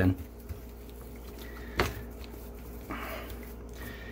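Gloved hands rubbing salt into the raw skin of a Cornish hen, a faint wet rubbing sound, with a single sharp click about two seconds in and a brief rustle near three seconds.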